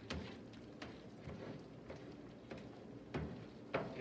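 A utensil stirring zucchini fritter batter in a mixing bowl: faint, irregular clicks and knocks against the bowl's side, about five or six in all.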